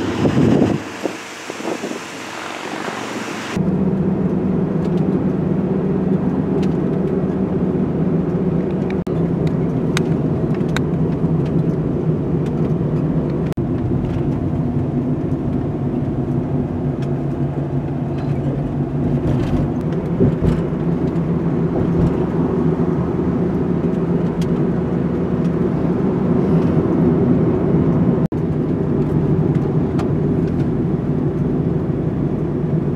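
A vehicle rushes past on the highway in the first second. From about four seconds in, a steady drone of engine and road noise is heard inside the cab of a Nissan NV200 van, whose four-cylinder engine is running as it drives.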